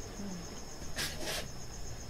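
A steady, high-pitched, finely pulsing insect trill like a cricket's, with two short hissy noises about a second in.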